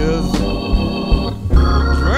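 Hammond organ holding a sustained chord in a slow soul-blues band, with drums underneath. A bending melody line trails off at the start, and another swells in at the very end.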